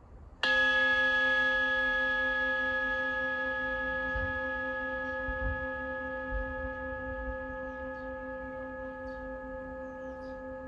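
A single strike on a bell-like metal instrument about half a second in, followed by a long, clear ringing tone made of several pitches that fades slowly.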